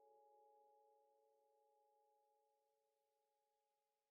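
Near silence: the faint tail of a channel logo's musical sting, a few steady ringing tones slowly fading away.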